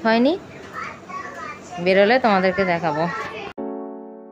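A high-pitched voice talking in two short stretches, then, about three and a half seconds in, a sudden cut to a held electric-piano chord that slowly fades.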